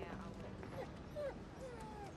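A dog whimpering: three short whines, each a brief bend in pitch, about half a second apart.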